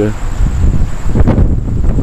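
Wind blowing across the microphone: a loud, uneven low rumble that rises and falls.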